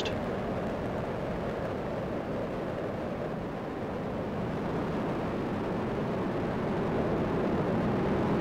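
Space shuttle Discovery's two solid rocket boosters and three liquid-fuel main engines firing during ascent: a steady, continuous rumble of rocket exhaust that grows slightly louder in the second half.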